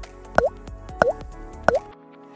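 Soft background music with three short pop sound effects, evenly spaced about two-thirds of a second apart, the kind used as on-screen text lines appear.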